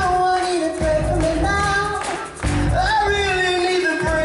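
Live band music: a singer holding long, sliding notes over electric guitar, bass and drums.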